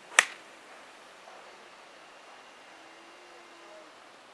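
Golf club striking a ball on a fairway shot: a single sharp click about a fifth of a second in, over faint outdoor background.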